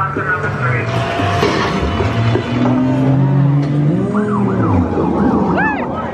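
A dark ride's onboard soundtrack: police sirens wailing over sustained low music, with quick rising-and-falling siren glides repeating more densely in the last couple of seconds.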